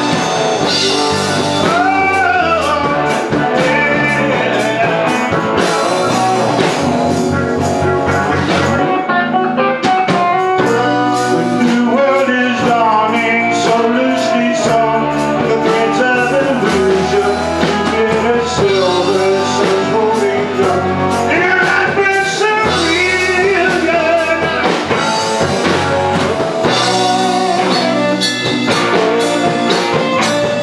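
A classic-rock band playing live: electric guitars, drum kit and keyboard, with a lead vocalist singing over them.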